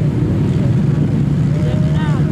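Several racing quad (ATV) engines running hard on an ice track, a steady, dense engine noise.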